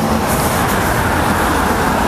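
Steady road traffic on a busy multi-lane highway, with cars driving past close by.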